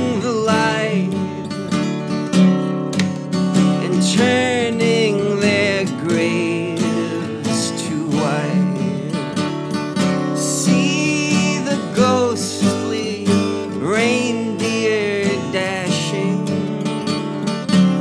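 Instrumental break of a folk-rock song: acoustic guitar strummed steadily, with a wavering lead melody played over it.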